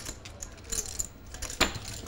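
Poker chips clicking and clattering together at the table, a few light clacks with a sharper click near the end.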